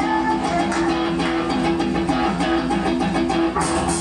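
Live band playing a song's guitar intro: electric and acoustic guitars picking a repeating figure over bass, growing brighter near the end.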